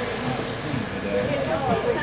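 Background voices of several people talking at once, quieter than the announcer's calls.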